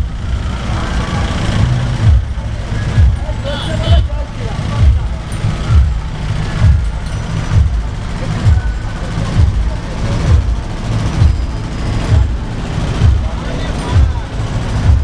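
Loud bass-heavy dance music from a truck-mounted DJ sound system: a steady, heavy bass beat, with crowd voices over it.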